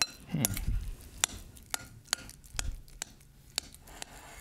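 A metal fork clinking and scraping against a glass mixing bowl as mashed avocado is stirred, in irregular sharp clinks.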